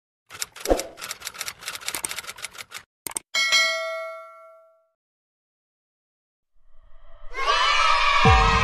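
Intro sound effects: a rapid run of sharp clicks, a single click, then one bell ding that rings out and fades over about a second and a half, like a subscribe-button notification bell. After a short silence, music fades in near the end.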